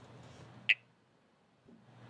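A pause in the talk: faint room tone with one brief high squeak about two-thirds of a second in, after which the sound cuts out to silence for about a second before the room tone returns.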